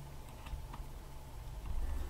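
Quiet room tone: a faint steady low hum with a few light ticks.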